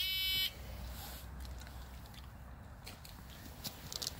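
An electronic shot timer gives one high, buzzy beep about half a second long: the start signal for a timed shooting run.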